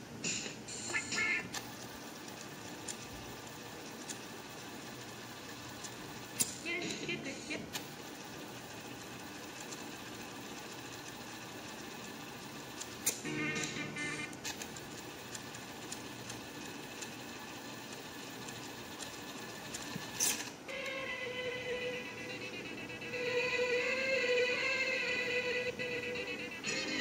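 Cassette player mechanism's piano-key buttons clicking several times while the tape is wound on to the next song, with a steady low noise between the clicks and brief snatches of music breaking in. About 21 seconds in, a song starts playing from the tape and runs on.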